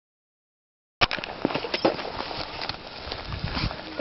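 Silence for about the first second, then outdoor rustling with a few sharp knocks, the sound of a person moving about close to the camera's microphone.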